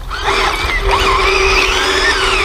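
Electric drive motors and gearboxes of an SG1203 Ripsaw RC toy tank whining as it is driven, the pitch wavering up and down as it steers by switching which track is driven.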